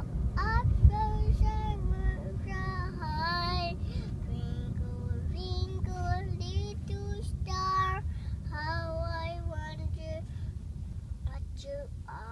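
A young child singing a song in a high voice, with held notes and pitch glides, over the steady low rumble of a moving car's cabin.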